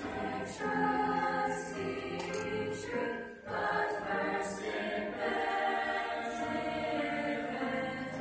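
A mixed-voice youth choir singing long held chords together, with a brief break between phrases about three and a half seconds in.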